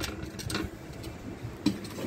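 A few light metallic clicks from a steel flex plate being handled on a flat surface. The plate is warped, so its centre lies flat and its edges stand off the ground.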